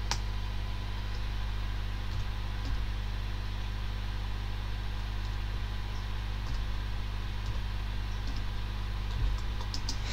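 Steady low electrical hum, with a few faint clicks scattered through it from a computer mouse as numbers are entered on an on-screen calculator.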